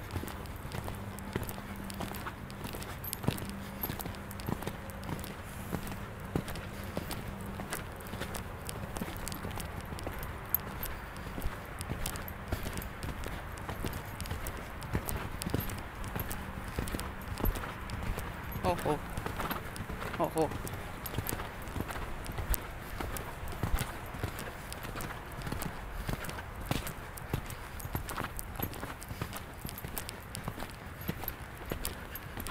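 A horse's hooves beating steadily as it moves under the rider, with a voice calling 'ho, ho' about two-thirds of the way through to slow it down.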